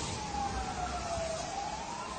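A wailing siren, its pitch falling slowly and starting to rise again near the end, over a steady rushing noise.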